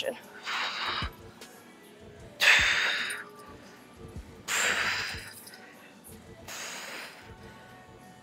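A woman breathing out hard through the mouth four times, about one breath every two seconds, in time with the reps of a cable front raise.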